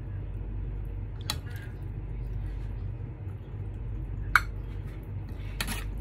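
A metal spoon clinking against a glass baking dish while fruit cocktail is spooned in: three short clinks, the second and loudest about two-thirds of the way in, over a steady low hum.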